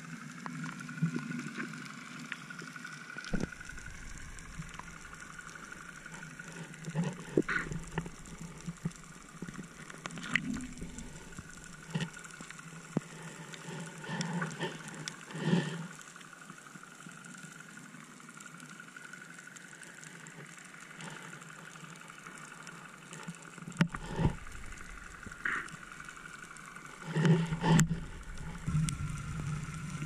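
Muffled underwater sound: the faint, steady whine of a distant boat motor drifting slowly in pitch, with scattered clicks and knocks, a cluster of louder knocks near the end.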